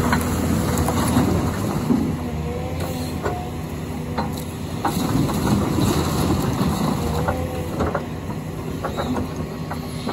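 Caterpillar excavator's diesel engine running steadily under load, with short hydraulic whines that rise and fall in pitch. Scattered cracks and knocks of splintering wood and debris come as the bucket works the demolition rubble.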